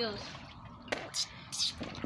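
Water dripping and sloshing quietly in an inflatable pool, with a sharp click about a second in.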